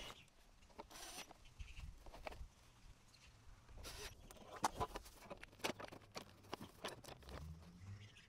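Faint, short runs of a cordless drill-driver, about a second in and again about four seconds in, driving screws into the plastic end cap of an awning roller tube, with scattered light clicks and knocks of the parts being handled.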